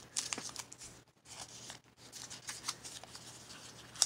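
Small folded paper packet and strip of tape crinkling and rustling in the fingers as it is unwrapped, with irregular faint crackles and a short pause about a second in.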